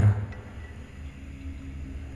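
A low, steady ambient drone from the soundtrack, held under a pause in the narration.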